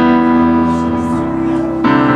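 Digital piano playing slow, held chords, with a new chord struck at the start and another just before the end.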